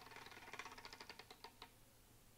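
Wooden spinning prize wheel clicking faintly as its pegs flick past the pointer, the rapid ticks slowing and stopping about a second and a half in as the wheel comes to rest.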